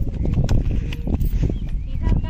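Strong wind buffeting the microphone with a steady low rumble, with scattered footsteps and small knocks on bare rock.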